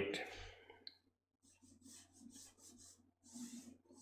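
Watercolour round brush drawing strokes of wash across sketchbook paper: a few faint, short brushing sounds about half a second apart, with a single click about a second in.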